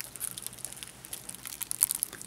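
Tissue paper and plastic wrap crinkling as a shrink-wrapped Blu-ray case is lifted out of a box. Scattered light crackles, a little louder near the end.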